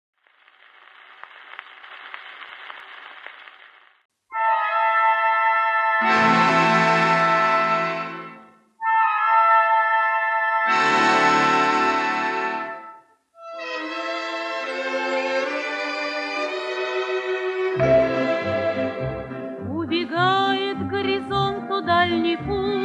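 Orchestral introduction played from a worn 78 rpm shellac record, opening with a few seconds of faint record surface noise. Then come two long, swelling brass-led chords, followed by a moving orchestral passage over a rhythmic bass, and a woman's singing voice enters near the end.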